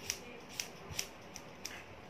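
Hair-cutting scissors snipping through the ends of long hair, five quick crisp snips in under two seconds.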